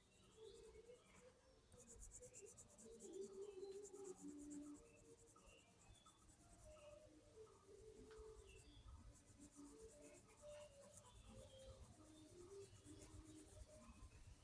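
Faint scratching of a pencil on paper in quick, short repeated strokes, starting about two seconds in.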